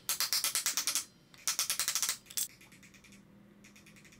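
Rapid light taps on a block of wood, about ten a second in two bursts of about a second each, driving a steering-head bearing race down into a motorcycle frame's steering head.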